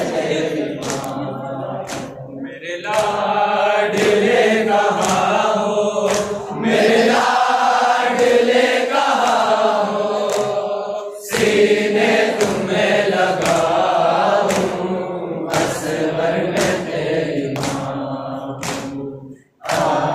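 A group of male voices chanting a noha (Shia lamentation) in unaccompanied chorus, kept in time by sharp slaps on a steady beat, the matam chest-beating that goes with such recitation. The chorus breaks off briefly just before the end and comes straight back in.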